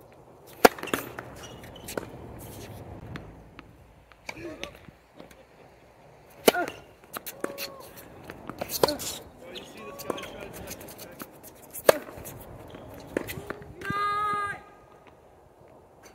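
A tennis rally on a hard court: rackets strike the ball in sharp pops, the near player's serve about half a second in and his strokes around six and twelve seconds in the loudest, the far player's hits fainter between. Short squeaks from sneakers on the court come between the hits.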